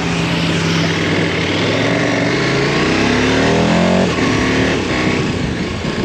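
KTM Super Adventure's V-twin motorcycle engine pulling away and accelerating hard, with wind rushing over the helmet camera. The revs climb, drop with an upshift about four seconds in, then climb again.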